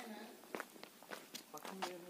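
Footsteps of people walking, a quick run of soft, sharp steps from about half a second in, under faint background voices.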